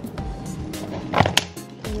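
Rustling, scraping and knocking of a bag, a zippered pouch and small items being handled and packed close to the microphone, with a louder clatter just over a second in, over background music.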